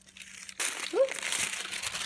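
Gold tissue paper crinkling as it is pulled open from over a box's contents. The crinkling starts about half a second in and keeps going.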